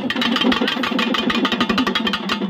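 Pambai drums beaten with sticks in a fast, unbroken roll of dense strokes.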